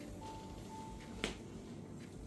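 Hands kneading an oiled back during a massage, with one sharp click about a second in, over soft background music with long held notes.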